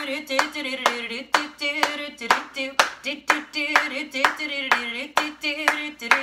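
A woman singing a children's song while clapping her hands to a steady beat of about two claps a second.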